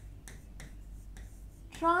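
Pen tip of a stylus tapping and clicking on a smartboard's touchscreen while writing: a run of faint, short clicks. A woman's voice starts near the end.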